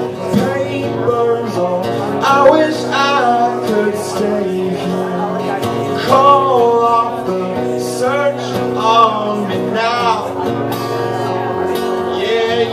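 A man singing with an acoustic guitar, his voice in long sung phrases over steady guitar chords.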